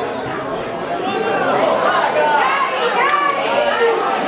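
Spectators' voices close to the microphone: overlapping chatter and calls, growing louder about a second in.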